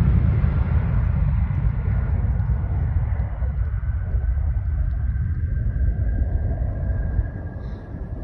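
Jet engines of a FedEx Boeing 757 freighter at takeoff power as it climbs away: a deep rumble with a faint steady whine above it, slowly fading.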